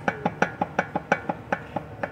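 Quick, evenly spaced knocking, about six knocks a second, each with a short woody ring.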